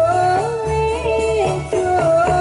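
Ndolalak dance music played loud: a high melody held on long notes with small slides in pitch, over a steady repeating drum beat.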